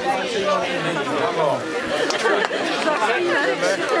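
Chatter of a crowd of spectators, several people talking at once with no one voice standing out.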